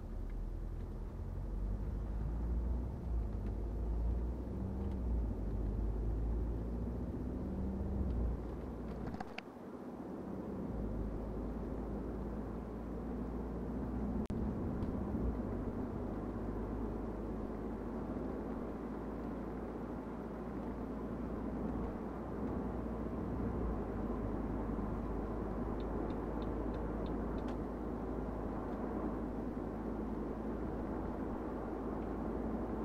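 Steady driving noise of a BMW 520d F10: the low drone of its four-cylinder diesel under tyre and road rumble. The deepest rumble drops away briefly about nine seconds in.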